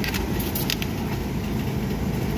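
Steady low rumble of supermarket background noise at the refrigerated meat case, with a few light clicks and crinkles in the first second.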